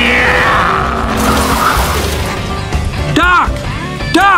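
Animated-film race soundtrack: background music mixed with cartoon race-car engines and tyres sliding on a dirt road. About three seconds in, a short pitched sound rises and falls.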